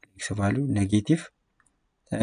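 A man's voice speaking for about a second, with a brief click at the very start, then silence.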